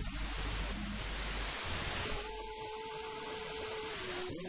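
Quiet worship music: steady hiss and low hum at first, then about halfway a single sustained note is held steadily for nearly two seconds before the melody moves on.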